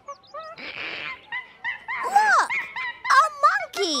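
Monkey chattering sound effect: a run of short, squeaky calls gliding up and down, after a brief hiss of noise near the start.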